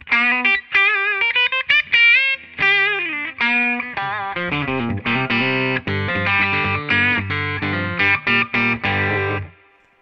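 Electric guitar, a 2014 Gibson Les Paul Standard Premium played on its bridge BurstBucker Pro pickup in full humbucker mode, through an amp. It plays bent single-note lines with vibrato, then from about four seconds in, fuller chordal riffing with low notes, stopping shortly before the end.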